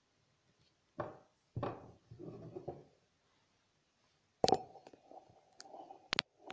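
Knocks and handling noises around a kitchen counter and stove: two sharp knocks about a second in, some rustling, then a sharp clatter near the end followed by a short ringing tone.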